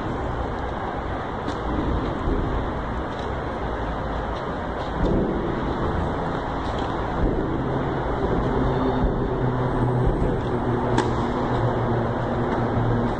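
Steady low rumble and hum filling an indoor tennis hall, with a few faint sharp knocks of racket strings on a tennis ball, about one and a half, seven and eleven seconds in.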